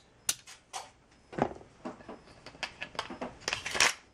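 Metallic clicks and clacks of a Lone Wolf Glock-pattern pistol being reassembled and function-checked by hand, with the parts and slide going together. The clicks are scattered, with a quick run of them near the end.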